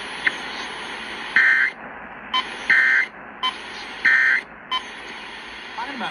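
Three short warbling data bursts from a NOAA weather radio's speaker over steady radio hiss: the EAS/SAME end-of-message code, sent three times about a second and a half apart, marking the end of the flash flood warning broadcast. A short click comes just after the start.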